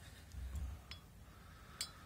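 Paintbrush clinking against a glass jar of diluted ink while loading it: two small sharp clicks, the second and louder near the end, after a soft low bump.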